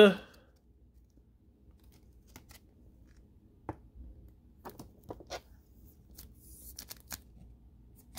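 A sleeved trading card being slid into a rigid clear plastic toploader, giving a few light, irregular plastic clicks and scrapes, with a brief soft hiss of card sliding on plastic near the end.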